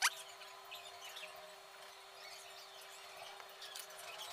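Small birds chirping faintly in the background, with one quick rising whistle at the very start and scattered short high chirps after it, over a steady low hum.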